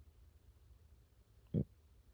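Near silence with a faint low rumble, broken about one and a half seconds in by one short vocal sound from the man, a grunt-like breath just before he speaks again.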